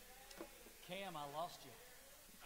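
Faint, distant speech: one person's voice talks briefly about a second in, picked up over the quiet room.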